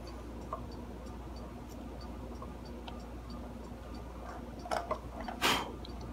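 Faint clicks and light scraping from a drill bit turned by hand to ream out a screw hole in a plastic pickguard, with one brief, louder scrape about five seconds in. A steady low hum runs underneath.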